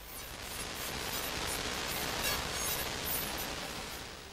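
Steady hiss of television static as the broadcast signal breaks up and transmission is lost, easing near the end.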